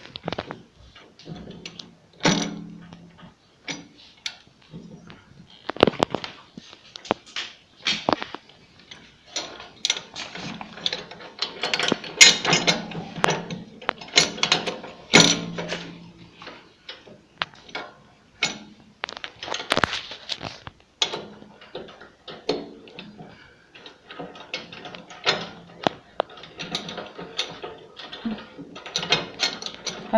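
Irregular metallic clicks, clinks and knocks as a steel cutting blade and its hub bolt are handled and fitted by hand into the rotor hub of a petrol flail mower. A few louder knocks ring briefly.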